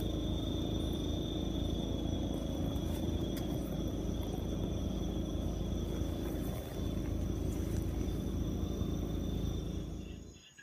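A steady low rumble of outdoor noise on a handheld microphone, with faint, steady, high-pitched insect calls above it. The rumble dips briefly about two-thirds of the way through.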